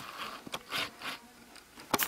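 Handling noise: a few light scrapes and clicks from the RC car and its plastic parts being moved about, with a sharper click near the end.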